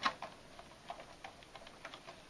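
A handful of faint, irregular clicks and light crackles of a clear plastic blister tray as a small figure is pried out of its moulded slot.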